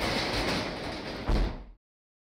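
Overhead roll-up door pulled down by hand, rattling as it rolls and closing with a heavy thud about a second and a half in.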